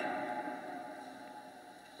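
A pause in a man's spoken narration, his voice dying away gradually into faint room tone.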